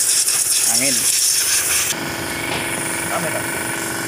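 Compressed air hissing from a blow gun on a compressor hose as washed engine parts are blown clean, cutting off suddenly about two seconds in. A steady mechanical hum follows.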